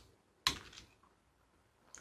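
Wheeled glass nipper biting a small piece off a glass mosaic tile: one sharp snap about half a second in.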